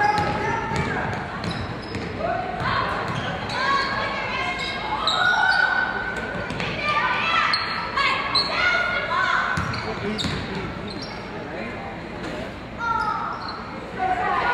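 A basketball being dribbled on a hardwood gym floor, with voices calling out on and around the court.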